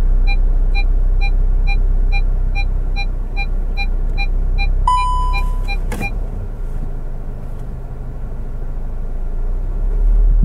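SEAT Tarraco's parking sensor warning beeping in short pips about three times a second while the car reverses under park assist close to the kerb, with one longer steady tone about five seconds in; the beeping stops with a click about six seconds in. A low steady engine and cabin rumble runs underneath.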